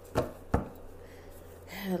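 Two quick, dull thumps of a hand on a cloth-covered tabletop, about a third of a second apart, with a woman's voice starting near the end.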